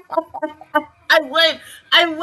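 A high-pitched voice in quick short bursts, then two longer, wavering vocal sounds in the second half.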